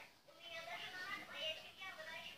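Faint, tinny music from a battery-powered musical toy set off by pressing its button.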